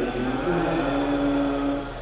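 Male voice chanting Arabic devotional verse, holding a long, steady, wavering note. A steady low electrical hum runs underneath.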